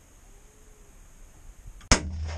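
A single rifle shot near the end from a Ruger chambered in .243, fired from inside a hunting blind: one sharp, loud crack.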